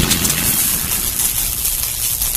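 End-screen animation sound effects: a deep rumble slowly dying away after a boom, over a steady rushing noise.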